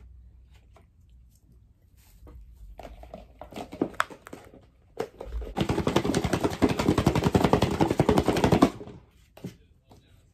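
Thin plastic takeout sauce-container lid crackling loudly as it is handled and worked open, a dense run of fast crackles lasting about three seconds, after a few scattered light clicks.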